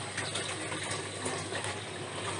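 Steady sound of nutrient solution running through the PVC channels of an NFT hydroponic system.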